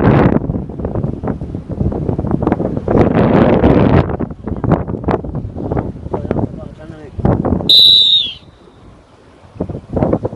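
Wind buffeting the microphone in gusts over choppy sea water. Near eight seconds a brief, high, slightly falling tone sounds, then the noise drops away.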